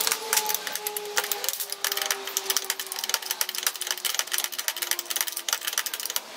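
Rapid, irregular metallic clicking and tapping of small metal parts and pliers being handled and fitted on a steel pedal box.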